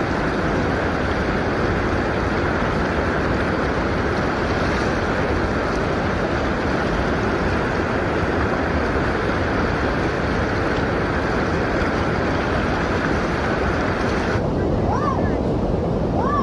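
Steady rush of fast-flowing canal water, with wind on the microphone. Near the end the sound changes abruptly and two short rising-and-falling tones are heard.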